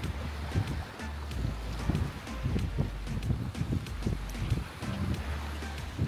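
Wind buffeting the microphone in irregular low gusts, under background music with a low bass line.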